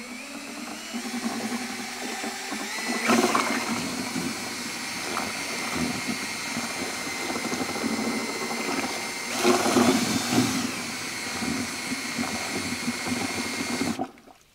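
Handheld drill spinning a plastic impeller mixer in a plastic bucket of Bora-Care and water: a steady motor whine over liquid churning. The whine steps up in pitch about three seconds in, grows louder briefly around then and again near ten seconds in, and cuts off at the end.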